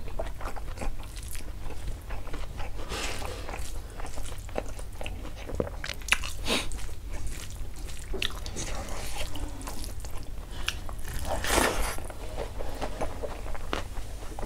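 Close-up eating sounds of a man chewing a mouthful of rice and dal with his mouth, with irregular wet smacks and clicks and a few louder bursts. Fingers squish and mix rice on the plate alongside.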